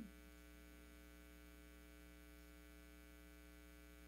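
Near silence with a steady low electrical mains hum.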